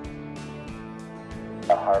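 Background music with a steady beat and sustained tones. Near the end a man's voice briefly cuts in over it.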